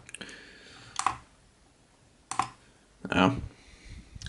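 Small plastic clicks from a digital pocket scale being set down and handled on a cutting mat: two short sharp clicks about a second apart, then a louder knock and rustle near the end.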